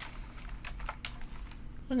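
Computer keyboard being typed on: a quick run of separate key clicks.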